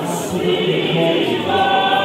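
Large congregation singing a hymn together in many voices, with a higher note held steadily from about a second and a half in.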